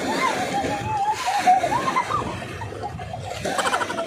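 A high-pitched voice calling out over splashing and sloshing of seawater as people move around a rubber inner tube in shallow water.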